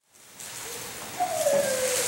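Concert hall room noise with faint rustling, fading in from silence, with a brief falling tone about halfway through, just before the orchestra and choir begin.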